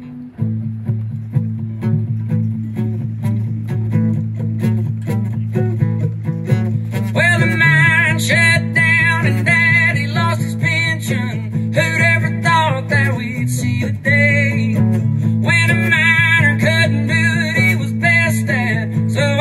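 Live country band playing a song's instrumental intro: strummed acoustic guitar over a steady low bass line. A fiddle comes in with a wavering melody about seven seconds in. The band briefly drops out near fourteen seconds, then returns louder.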